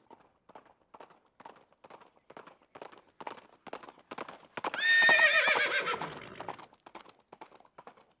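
Horse hooves clip-clopping at a steady walk, about three or four hoofbeats a second. About five seconds in, a horse gives one loud, wavering whinny that drops in pitch as it ends.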